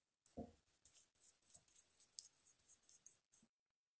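Magnetic eyeliner bottle, capped, being shaken by hand: a soft knock, then a faint, quick, irregular rattle of small clicks that stops suddenly about three and a half seconds in.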